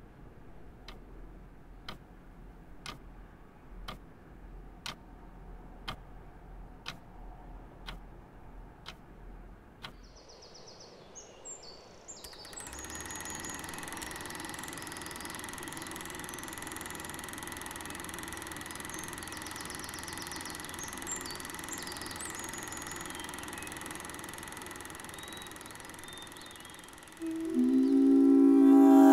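Slow ticking, about once a second, for the first ten seconds. Then a woodland ambience with birds chirping over a steady background. Plucked guitar music comes in loudly near the end.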